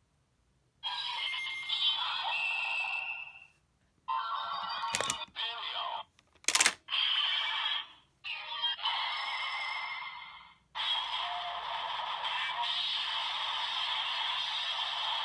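Bandai DX Ultra Z Riser toy playing electronic sound effects, voice call-outs and music through its small speaker in several short bursts with brief gaps, two sharp plastic clicks from the toy's mechanism in the middle, and a longer steady stretch near the end.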